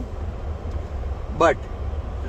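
Steady low rumble inside a Hyundai car's cabin while it waits at a red light, with traffic passing outside.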